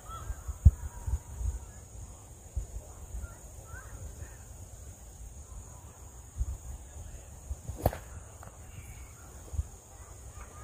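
Outdoor ambience: wind rumbling on the microphone in gusts, with faint bird calls and a single sharp crack about eight seconds in.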